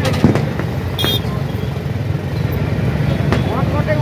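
Motorcycle engines running close by, a steady low rumble, among people talking in a crowd.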